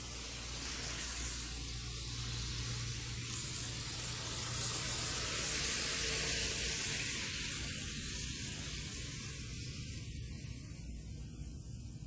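Tomix N-scale Kintetsu 50000 Shimakaze model train running on the track: a steady hissing wheel noise from the metal wheels on the rails, with the motor itself very quiet. The noise grows a little louder in the middle and eases off toward the end.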